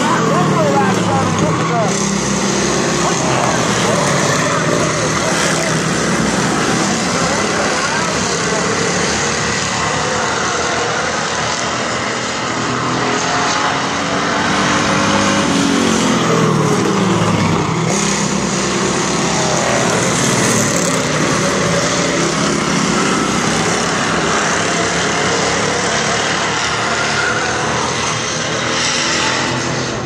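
Several stock car engines running hard around a paved oval. Cars pass close by with the engine note sweeping down in pitch as they go past, once about the start and again around halfway.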